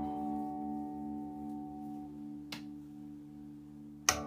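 A chord on a PRS electric guitar left to ring, slowly fading away, with a faint click about two and a half seconds in.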